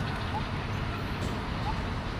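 Steady background hiss and low rumble, with two faint short high chirps about a second and a half apart.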